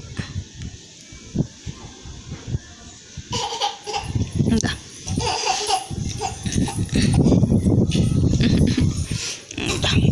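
A toddler's fussing, whimpering cries, short and broken, growing louder in the second half, with laughter near the end.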